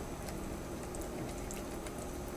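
Wire whisk stirring flour into a wet bread batter in a glass bowl: a faint, steady soft squishing with a few small light ticks.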